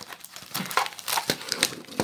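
Packaging being handled, crinkling in quick, irregular crackles.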